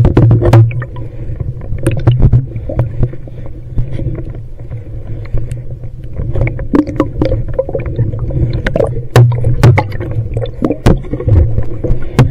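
Underwater camera housing rubbing and knocking against a diver's suit and gear, giving a low rumble that swells in bursts and many scattered clicks and knocks.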